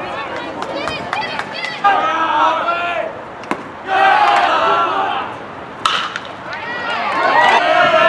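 Baseball crowd calling out and cheering, many voices overlapping and swelling in loud stretches, with a couple of sharp knocks among them.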